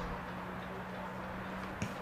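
Outdoor ambience at a football pitch: a steady low hum under a haze of background noise, with one short knock near the end.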